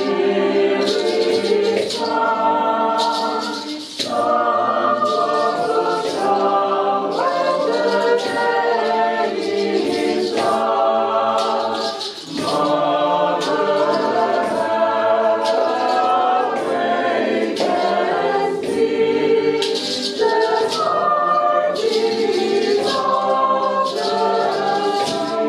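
Small choir singing, phrases broken by brief pauses about 4 and 12 seconds in.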